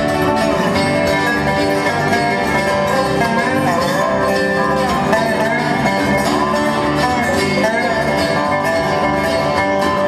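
Live bluegrass band playing steadily, banjo picking over strummed guitars, in a passage with no clear singing.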